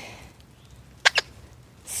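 The squeaker inside a worn plush rhino dog toy squeaks twice in quick succession about a second in; the squeaker still works after almost six months of hard play.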